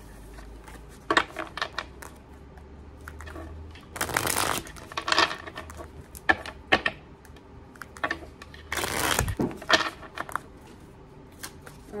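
A deck of tarot cards being shuffled by hand, overhand: scattered short snaps and taps of cards, with two longer rushing passes about four and nine seconds in.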